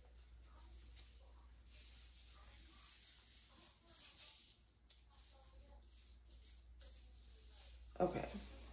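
Near silence: a low steady room hum with faint rustling that comes and goes, as a gloved hand smooths down a section of hair.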